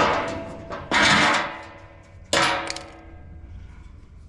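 Three ringing metal clangs, about a second apart, as a large round sheet-metal griddle and the steel box of a ring gas burner are knocked together while being handled. The clang about a second in is the loudest and rings the longest.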